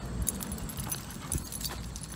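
Metal collar and leash hardware jingling in scattered light clicks as a dog pulls hard on its leash, with shoes scuffing on asphalt.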